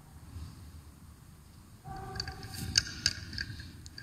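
Altar bells rung at the elevation of the host after the consecration: a cluster of ringing bell tones with several sharp strikes, starting about two seconds in.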